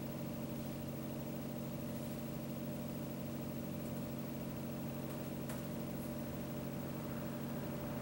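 Steady hum of room equipment, several even tones held at a constant level, with a few faint clicks scattered through it, the first about two seconds in.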